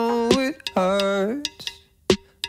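Pop song with vocals over a light beat: a singer holds two long notes, the second for about half a second, then the music thins out to a brief near-quiet gap just before the end.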